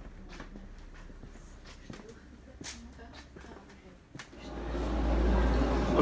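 Quiet shop ambience with faint distant voices and a few small clicks. A little over four seconds in, a loud low rumble comes in and builds.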